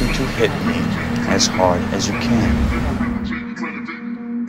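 The beat drops out about a quarter second in, leaving a film-dialogue sample: a man's voice over a steady background hum with car-like noise. The top end thins out and the sound fades near the end.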